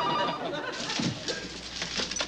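Studio audience laughter dying away, over a telephone ringing with a warbling tone that stops just after the start. A few soft clicks and knocks follow as the room quietens.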